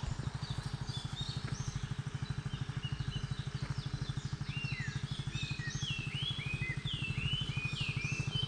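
A motorcycle engine running at a steady idle, a fast, even low putter. Birds call repeatedly in short chirps through the second half.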